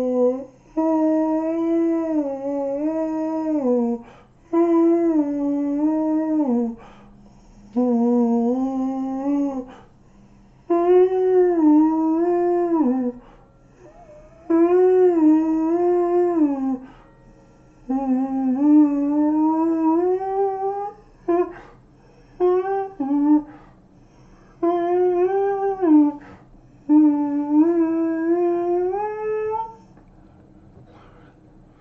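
A man's voice singing long wordless vowel tones: about ten phrases of two to three seconds each with short breaks between, the pitch sliding slowly up and down.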